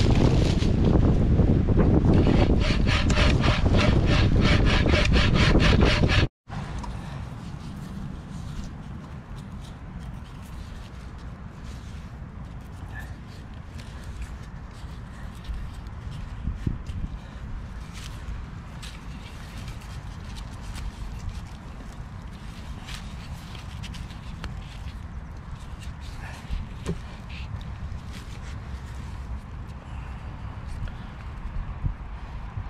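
A homemade hazel-framed bucksaw cutting through a fallen branch in quick, even back-and-forth strokes, loud, stopping abruptly about six seconds in. After that, quiet rustling and small ticks of cord being wrapped around the saw's wooden crosspiece.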